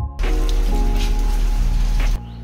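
Background music over a loud, steady hiss of rain with a heavy low rumble. The rain sound cuts in just after the start and cuts off suddenly near the end.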